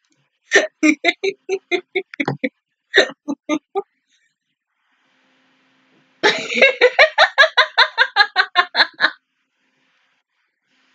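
A woman laughing in two bouts of short, rhythmic bursts: one in the first few seconds, then a louder, faster run of about six bursts a second starting about six seconds in.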